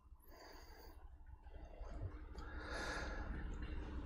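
Low room tone, then a faint breath close to a clip-on microphone, swelling about three seconds in.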